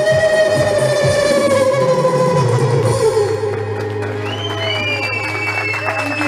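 A woman's live voice holds a long final note of a song that slowly falls in pitch over sustained keyboard chords and a held bass note. In the last couple of seconds the audience starts clapping and whistling.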